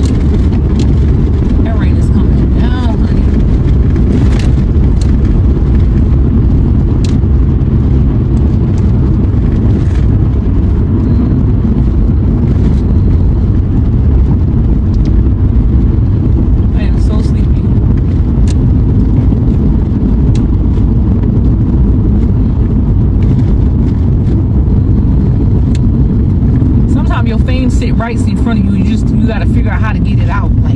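Loud, steady low rumble of a car driving at road speed, heard from inside the cabin: tyre and engine noise, with occasional faint clicks.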